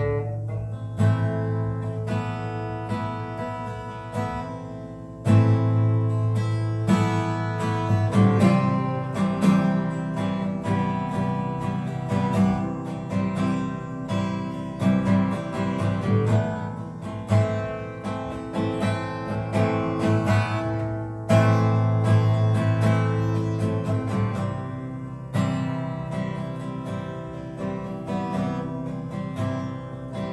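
Steel-string acoustic guitar strummed in a country style, chords ringing under a steady run of strokes. The playing gets louder at about five seconds and again at about twenty-one seconds.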